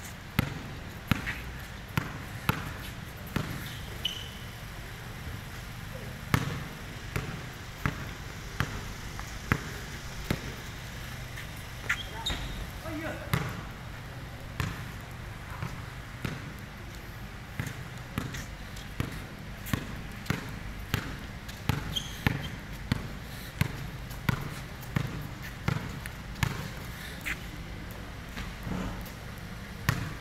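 A basketball being dribbled on a concrete court: sharp bounces about once or twice a second, at an uneven pace.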